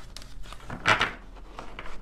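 Tarot cards being handled and shuffled on a wooden table: light clicks and taps, with a brief louder rustle about a second in.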